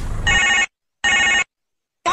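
A telephone-style ring sound effect sounding twice: two short identical rings, each cut off abruptly into dead silence.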